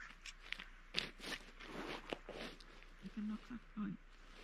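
Close rustling and scattered crunches of people shifting about on stony gravel ground and moving their clothing, with a short low murmur of a voice about three seconds in.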